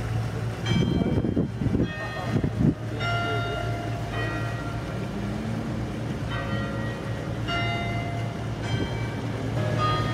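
Church bells ringing, a string of strikes roughly a second apart, each ringing on and fading, over a steady low hum.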